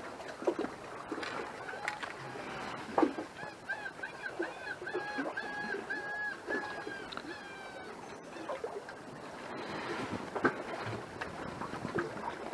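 A bird calling a run of about a dozen short, level-pitched notes, roughly three a second, from about three seconds in until about eight seconds. Sharp clicks and knocks come and go around the calls.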